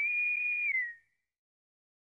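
A single high whistle-like tone from the trailer's soundtrack. It rises slightly, holds steady for just under a second, then slides down and fades out about a second in.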